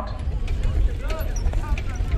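Indistinct voices of people talking, faint and brief, over a steady low rumble.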